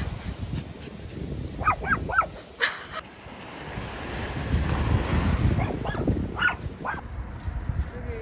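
A small dog yipping in two quick clusters of short high-pitched calls, over the low wash of waves breaking on a beach.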